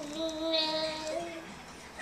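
A child-like singing voice from an electronic toy holding one steady note for about a second and a half, then stopping.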